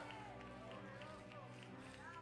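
A faint sustained keyboard chord held as background church music, with faint scattered voices from the congregation.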